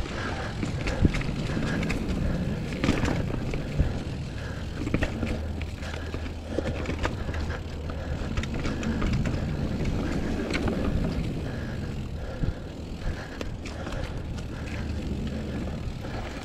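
Mountain bike rolling fast down a dirt singletrack strewn with dry leaves: a continuous rush of tyre noise with frequent sharp clicks and knocks as the bike rattles over bumps and roots.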